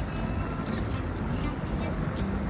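Outdoor city street ambience: a steady low rumble with faint, indistinct voices in the background.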